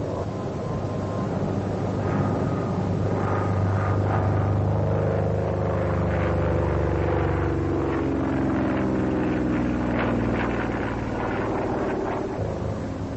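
Vought F4U Corsair's Pratt & Whitney R-2800 radial engine and propeller droning in flight, its pitch falling slowly over several seconds in the middle.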